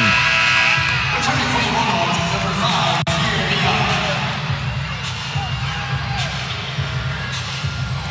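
Arena PA music playing over the murmur of a crowd in a large basketball arena while play is stopped.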